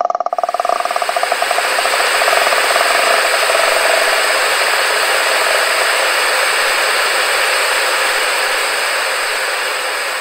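A loud wash of static hiss swells over the first couple of seconds and then slowly fades. Under it, a pulsing tone dies away in the first few seconds.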